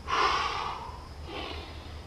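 A man breathing hard from exertion: a forceful exhale of about a second, then a shorter, quieter breath.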